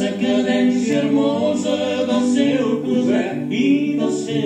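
A man singing a song, accompanied by a classical guitar, with long held notes. The singing bends and wavers in pitch over the second half.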